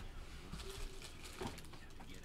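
Quiet handling of trading cards at a table: faint rustles and light ticks, with one soft tap about one and a half seconds in.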